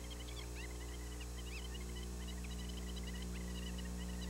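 Steady electrical mains hum on an old video recording, with faint, high, scattered chirps over it.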